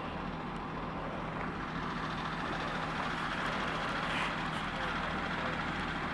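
A truck engine running steadily, with an even haze of outdoor noise over it.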